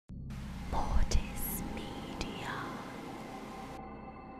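Glitchy horror logo sting: a burst of static-like hiss with two deep thumps about a second in, a sharp click a little after two seconds, and a whispered voice in the noise. The static cuts off near the end, leaving a fading drone.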